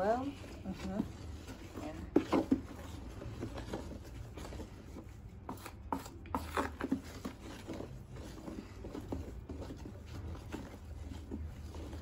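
A wooden stick stirring a thick, foamy homemade liquid-soap mixture in a plastic basin: irregular knocks and scrapes of wood against the plastic, with the loudest knocks about two seconds in.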